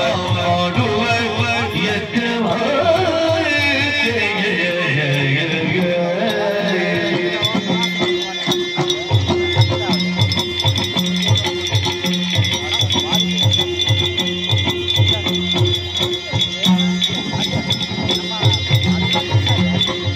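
Live Yakshagana ensemble music. A singer's voice rises and falls over a steady drone, then from about nine seconds in a drum takes up an even, repeating beat, with metallic cymbal strokes keeping time throughout.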